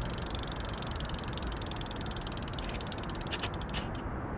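Bicycle freewheel ratchet ticking rapidly as the wheel spins freely. The clicks slow into a few separate ticks near the end, over a low rumble.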